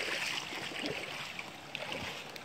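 Shallow creek water running steadily across a muddy woodland trail, with a few faint clicks.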